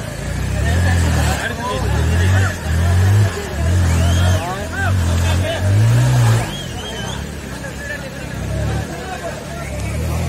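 Floodwater rushing over a road, with a crowd's voices calling out in the distance. Repeated low rumbles of wind on the microphone come in bursts and are loudest through the first six or seven seconds.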